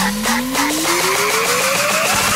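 Fast electronic hardcore dance music from a J-core DJ mix: an even, quick drum beat under a long rising synth sweep that climbs steadily in pitch, building up toward the next section.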